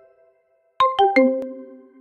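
Short musical jingle: about a second in, three quick notes, each lower than the last, ring out and fade.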